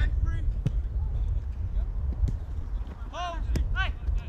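Heavy wind rumble on the microphone, with a few sharp thuds of a football being kicked and players shouting across the pitch about three seconds in.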